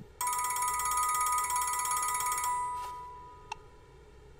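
Telephone ringing: a steady, trilling electronic ring for about two and a half seconds that then fades away, followed by a single short click or beep.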